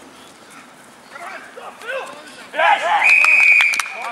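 Men shouting on a rugby pitch as a try is scored, then one steady referee's whistle blast of just under a second near the end, signalling the try.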